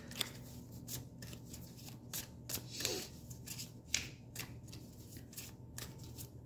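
A deck of oracle cards being shuffled and handled by hand: a string of soft, irregular card flicks and rustles.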